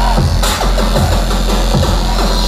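Loud electronic bass music played live through a concert hall's PA system, with a heavy sub-bass and repeated bass and drum hits.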